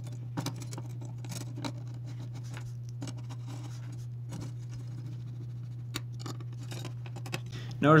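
Small screws being driven by hand with a screwdriver into a perforated metal gusset plate: faint scratching and light metal clicks, a few of them sharper, over a steady low hum.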